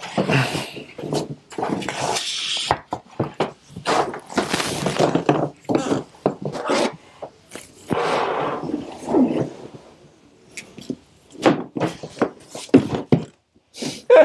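The long charging cable of a Tesla Gen 3 Wall Connector being uncoiled and dragged about: irregular rubbing and rustling with a series of knocks and thunks as the cable and its connector handle bump against the table.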